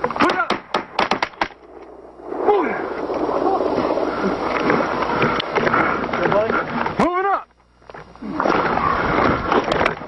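A rapid volley of about seven gunshots within the first second and a half, recorded on a body-worn camera, followed by shouting over a noisy outdoor background.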